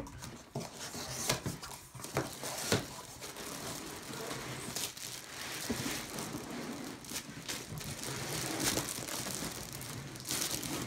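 Clear plastic bag crinkling as a bagged rifle case is slid out of its cardboard shipping box, with sharp knocks and scrapes in the first few seconds and steadier crinkling after.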